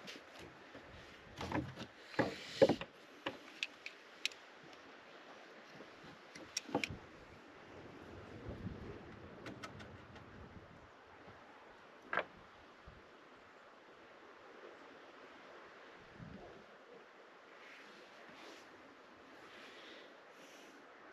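Hand-handling noises from rope, twine and a sailmaker's needle and palm: a burst of knocks and rustles about two seconds in, then a few scattered sharp clicks over faint steady background noise.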